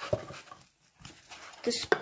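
Light knocks and rustles of small metal candle tins being handled and lifted out of a cardboard box, then a voice starts speaking near the end.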